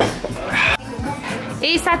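Background music playing in a restaurant, with a short breathy sound about half a second in and a man's voice briefly near the end.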